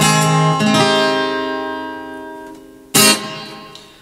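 Acoustic guitar ending a song: a strummed chord rings and slowly dies away, then a final strum about three seconds in rings out and fades.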